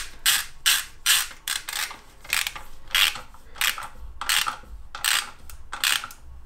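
Hand ratchet wrench clicking in short bursts, two or three a second, as it runs in a bolt joining the automatic gearbox to the engine.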